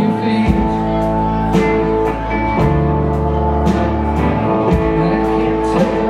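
Live rock band playing an instrumental passage: electric guitars, bass, keyboard and steel guitar over drums keeping a steady beat of about two strikes a second.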